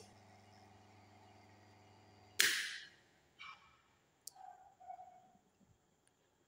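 Single-phase motor and its energized contactor giving a faint steady mains hum, then a sharp clack about two and a half seconds in as the selector switch is turned to zero and the contactor drops out; the hum stops as the motor is switched off, and a few faint clicks follow.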